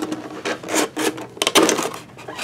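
Hands working a Pokémon tin's packaging, a clear plastic insert rubbing and scraping in several short bursts, the loudest about one and a half seconds in.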